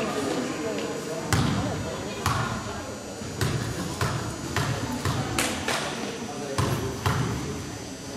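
A basketball dribbled on a hardwood gym floor before a free throw: about nine bounces at an uneven pace, starting about a second in.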